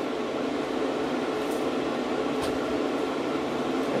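Steady mechanical hum of a cooling fan, an even whir with a faint steady tone running under it.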